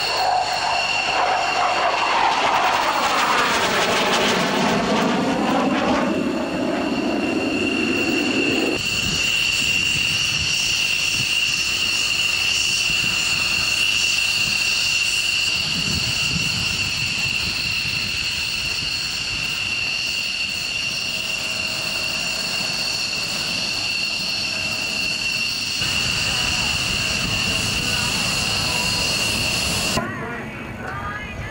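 Military jet fighter making a low fly-by, its engine noise sweeping down in pitch as it passes, a few seconds in. A steady high jet engine whine follows, from an F-16 running on the ground.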